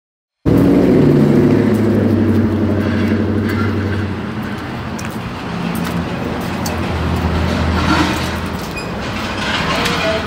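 A motor vehicle's engine running with street noise. It starts suddenly about half a second in, after a brief silence, and is loudest for the first few seconds.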